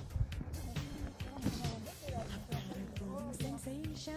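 Background pop music with a steady beat and a voice singing over it.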